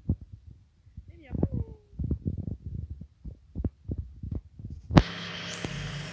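Irregular low thumps and rumble from a handheld phone microphone being jostled while its holder walks over dry ground, with a brief gliding voice-like sound about a second in. About five seconds in, a sharp click is followed by a steady hiss with a low hum.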